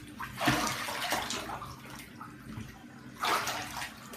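Water sloshing and splashing in a filled bathtub, in bursts: one about half a second in, one around one second, and a louder one a little past three seconds.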